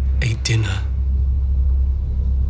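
A steady low rumble, with a short male vocal sound about a quarter second in.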